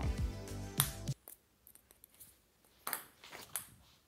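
Ping-pong ball bouncing on a concrete floor: a few short, sharp clicks about a third of a second apart in the second half, after background music that ends about a second in.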